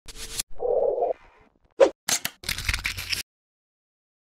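Logo-intro sound effects: a run of short, separate noisy sounds, the loudest a brief sharp one a little before two seconds in, the last a longer rustling stretch that stops about three seconds in.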